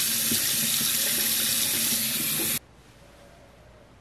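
Bathroom faucet running into a hammered copper sink, with splashing as water is scooped up to rinse a face. The flow stops suddenly about two and a half seconds in, leaving faint room tone.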